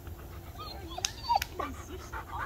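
A dog whimpering in short, falling whines, with two sharp clicks a little after a second in.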